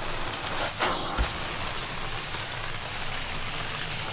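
Carpet-cleaning hot-water extraction wand working across carpet: a steady rushing hiss of suction and water spray. A brief louder surge comes just under a second in, followed by a short low thump.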